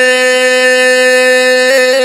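A man's voice holding one long sung note at a steady pitch in a Pashto naat, sung without instruments and sounding like a drone.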